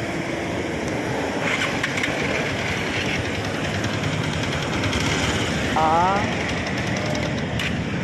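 Bajaj DTS-i single-cylinder motorcycle engine idling steadily, a fast even run of firing pulses.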